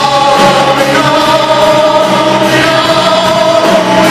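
Live band music: singing voices holding long notes in harmony, with the women's voices joining the male lead, over acoustic guitar.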